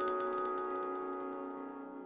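Outro ident jingle of chime-like mallet tones, the struck notes ringing on and fading out.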